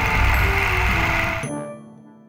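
Cartoon sound effect of a door swinging shut: a loud noisy rush with a deep rumble lasting about a second and a half, fading away near the end.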